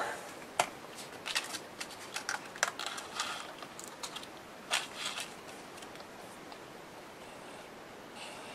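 Paper rustling and small clicks and taps as a sheet of patterned paper and a glue bottle are handled on a work table, stopping about five seconds in.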